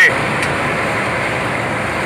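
Diesel-fired blower burner heating a bitumen tank, running with a steady, even rushing noise.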